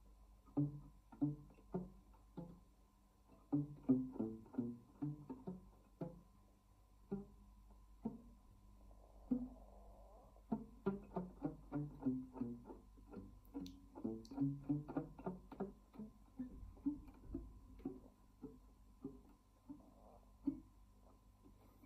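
Nylon-string classical guitar played fingerstyle: a passage of plucked notes in several short phrases separated by brief pauses.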